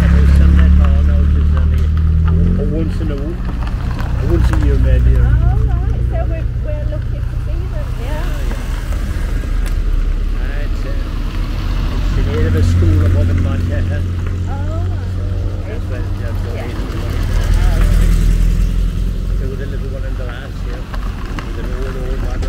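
A procession of classic cars driving slowly past one after another, the engine sound swelling about four times as each car goes by. One of them, about halfway through, is a Morris Minor Traveller.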